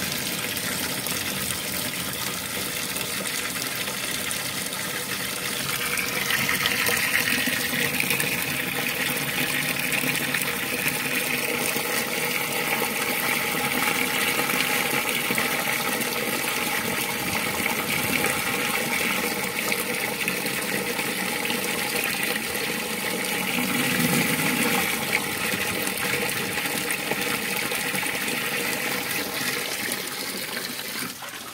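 A stream of water pouring into a plastic tub of standing water, splashing and churning up bubbles. It runs steadily throughout and grows a little louder about six seconds in.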